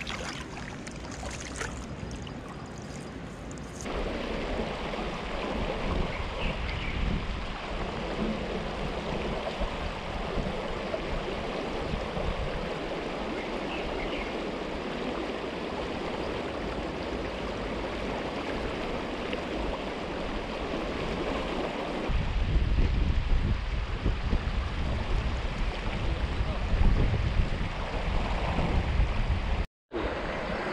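Shallow river water running and gurgling, a steady rushing noise. In the last third a heavier low rumble of wind on the microphone joins it.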